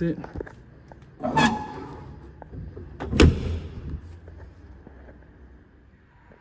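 Two loud thunks, one about a second in and one about three seconds in, each with a short ringing tail.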